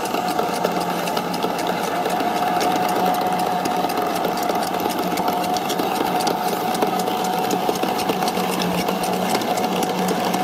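Hayward TigerShark PM1612 robotic pool cleaner running at the waterline: a steady motor hum, with water churning and splashing out of its pump outlet.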